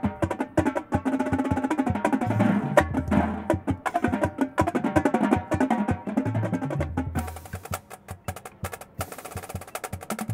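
High school marching drumline of Tama snare drums, tenor drums and pitched bass drums playing a fast cadence of dense stick strokes, with bass drum runs stepping down in pitch. Over the last couple of seconds it thins to lighter, sparser strokes.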